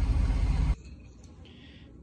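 Road and engine noise inside a moving car's cabin, a steady low rumble that cuts off suddenly under a second in, leaving a quiet room.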